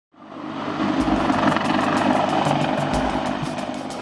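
CH-53E Super Stallion heavy-lift helicopter's rotor and turbine engines running, fading in at the start, with a faint fast chopping from the rotor blades.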